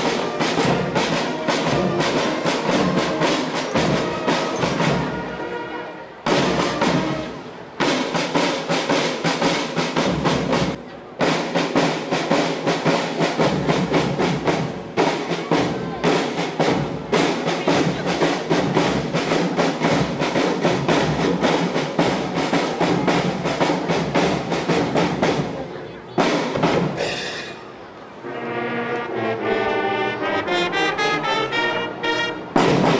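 Navy marching band's drum line playing a fast cadence on marching drums and bass drums with cymbal crashes, breaking off briefly a few times. Near the end, trumpets come in with sustained notes.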